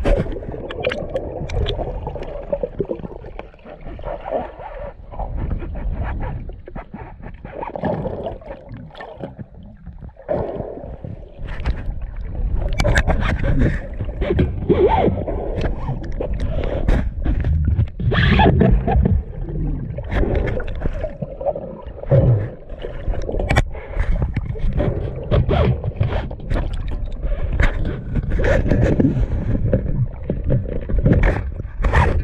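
Water rushing, gurgling and splashing around a hand-held camera as it moves between underwater and the surface, with many irregular knocks and scrapes against the camera.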